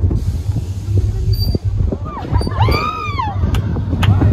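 Roller coaster train rumbling steadily along its track. A few high, rising-and-falling vocal cries come in over it between about two and three seconds in.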